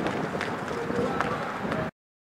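Street commotion at a clash: distant voices calling out over a steady outdoor noise, with scattered sharp clicks. The sound cuts off abruptly near the end.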